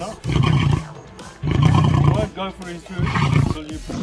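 Male lion roaring: three rough roars about a second apart.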